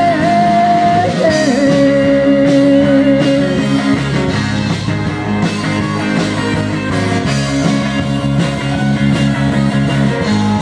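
Live rock band playing through a PA: electric guitar and drums, with a long held melody note in the first few seconds.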